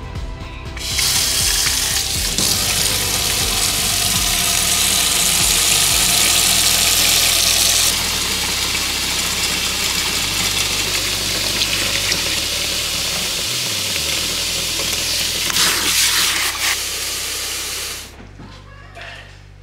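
Kitchen faucet running into a plastic spin-mop bucket in a stainless steel sink, a steady rush of water filling the bucket. It starts about a second in and is a little softer from about halfway.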